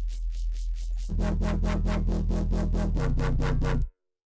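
Distorted synth bass from Arturia Pigments playing back: a steady sub-bass under a hissy high layer of noise and distortion artifacts that pulses about eight times a second. About a second in, a heavier, brighter bass note joins; the note changes about three seconds in, and playback cuts off suddenly just before the end.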